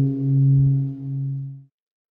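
Low, bell-like struck tone of a logo sting ringing on and wavering slowly in loudness, then cut off suddenly near the end.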